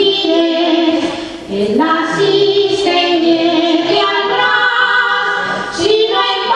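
A small group of women singing a traditional Valencian folk song together, holding long notes, accompanied by a band of guitars and other plucked string instruments. The singing drops briefly about a second and a half in, then picks up again.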